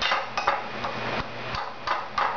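Metal potato masher knocking and scraping against a small pan while mashing avocado: an irregular run of clinks and scrapes, about three a second.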